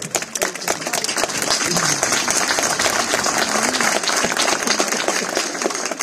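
A small crowd applauding: dense, steady clapping.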